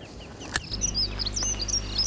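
Small birds chirping in quick, high twittering notes, with a low steady rumble underneath and a single sharp click about half a second in.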